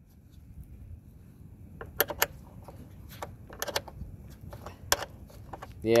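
A handful of sharp metal clicks and clinks, scattered from about two seconds in, as a combination wrench is fitted to and works the mounting bolts of a vacuum-style fuel pump on a Kohler 23 hp mower engine, over a low steady rumble of wind.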